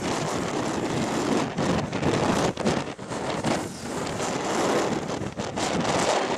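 Strong wind gusting and buffeting the microphone, a rough roar that swells and dips irregularly.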